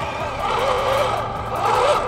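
Electric drive motors and gearboxes of an SG 1203 1/12-scale RC drift tank whining as it drives on asphalt, the pitch rising and falling with the throttle.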